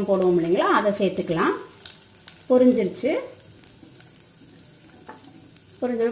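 Whole spices sizzling in hot oil in a stainless steel pot: a soft, steady frying hiss with a few faint pops. A woman's voice speaks over it in the first half.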